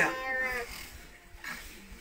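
A man's voice trailing off in a drawn-out, falling vowel at the end of a phrase, then a short quieter pause.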